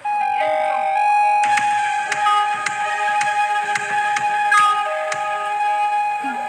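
Opening theme music for a TV news programme: long held notes over a steady ticking beat that comes in about one and a half seconds in.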